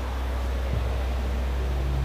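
Steady low hum with an even hiss above it, a constant background drone.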